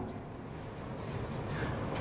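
A pause in speech: low, steady background noise of the room picked up by the microphone, with no distinct event.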